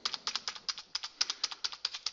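Computer keyboard's Enter key tapped rapidly over and over, about ten clicks a second, stepping the router's configuration listing forward line by line at the '--More--' prompt.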